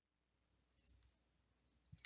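Near silence: a faint recording noise floor, with one tiny click about a second in.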